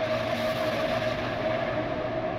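A steady rushing drone with one held hum running through it, part of an animated intro transition.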